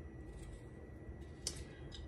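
A few faint, short clicks of a kitchen knife cutting through a potato held in the hand, the clearest about one and a half seconds in, over a low steady hum.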